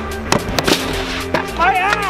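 Stunt scooter hitting skatepark concrete as the rider comes down from a flip and loses the landing: two sharp impacts a third of a second apart in the first second. Background music runs throughout.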